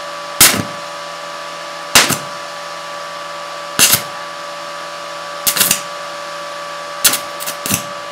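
Electric arc struck again and again between a carbon rod from a salt battery and a copper wire twist, on a welding inverter set to 20 amps: about six short, loud bursts a second or two apart, some of them doubled, as the rod touches and the arc flares. A steady hum with several tones runs under the bursts.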